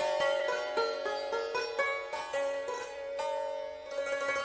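Persian classical music in dastgah Homayoun played solo on a struck or plucked string instrument. It is a quick run of separate notes, each one ringing on under the next.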